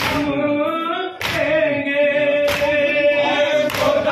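A crowd of men singing a noha in unison, with chest-beating matam strokes landing together about every second and a quarter, four times.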